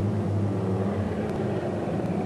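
Fender-bender race car engines running with a steady low drone.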